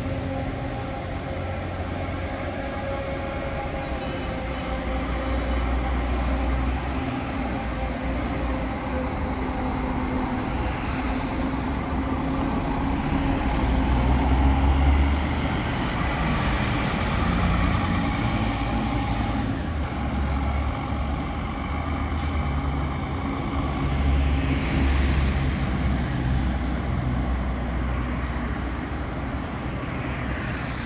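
Diesel coach bus engine running as the coach pulls out and drives away, with a steady low rumble. It gets loudest about halfway through as it passes close by, swells again later, and fades as it goes off down the road.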